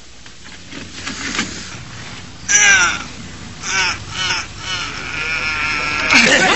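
Three short, harsh shouted cries falling in pitch, the first the loudest, over a low crowd murmur.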